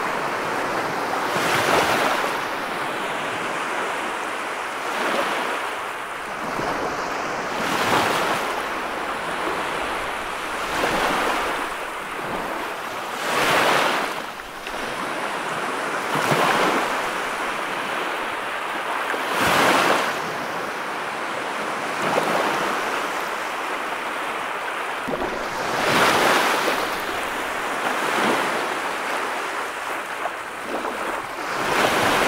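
Ocean surf breaking on a sandy beach: a steady wash of foaming water with a louder surge every two to three seconds as each wave breaks and runs up the shore.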